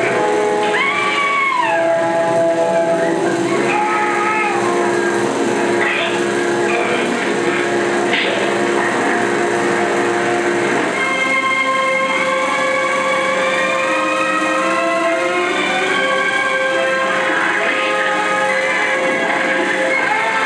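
Film score music from the soundtrack of a 16mm print, made of held chords with a few sliding high notes early on. About eleven seconds in it changes to a fuller, sustained chord.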